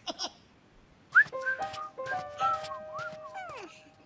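Cartoon music and sound effects: about a second in, a sharp upward whistle-like glide opens a run of overlapping held whistle-like notes at several pitches, with quick ticks between them. Falling glides follow near the end.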